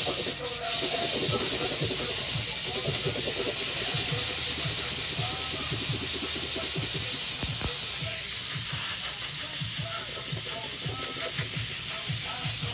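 Steamer jetting a continuous stream of steam onto a sneaker to clean it, a loud, steady hiss.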